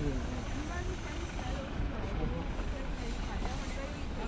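Outdoor ambience: faint, indistinct voices over a steady low rumble.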